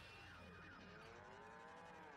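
Near silence, with a faint pitched sound that rises and then falls over about a second and a half.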